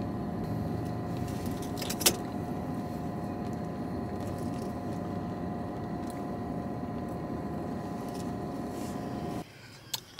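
Steady hum inside a parked car's cabin, the car's engine and climate fan running, with a single sharp click about two seconds in. The hum cuts off shortly before the end.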